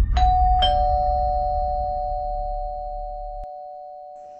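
Doorbell chime: a two-note ding-dong, a higher note then a lower one about half a second later, both ringing on and slowly fading. A low music bed sits underneath and cuts off near the end.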